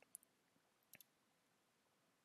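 Near silence with a few faint clicks at the computer: a single click just after the start, then two in quick succession about a second in.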